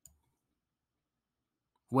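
Near silence with a faint single click at the very start; a man's voice begins right at the end.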